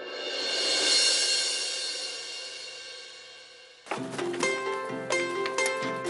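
Background score: a cymbal swell that builds over about a second and slowly fades away. About four seconds in, a new rhythmic music cue of short, sharp notes and percussion starts.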